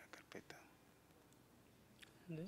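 Near silence: room tone, with a few faint, distant syllables of speech in the first half second.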